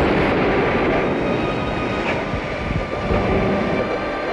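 Steady rumbling noise with no speech, with one faint knock about two seconds in.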